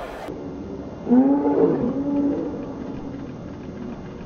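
A man's loud, drawn-out shout lasting just over a second, starting about a second in: the protection helper threatening the dog while it holds the bite on his sleeve.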